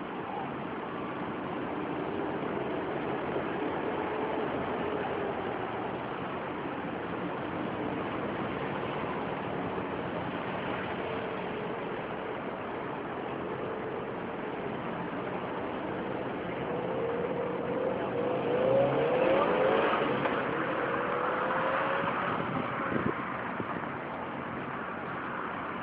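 Steady city street traffic, with a motor vehicle's engine rising in pitch and growing louder as it passes, loudest about three quarters of the way through.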